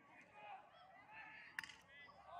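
Faint shouting and calling of voices on a lacrosse field, with one sharp crack about one and a half seconds in.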